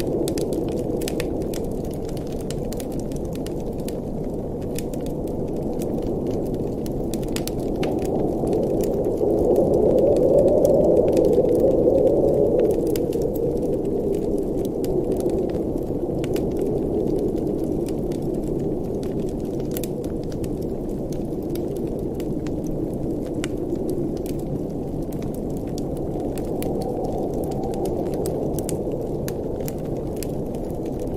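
Wood fire crackling in a fireplace, with sharp pops scattered all through, over a steady, muffled blizzard wind that swells about a third of the way in and then eases again.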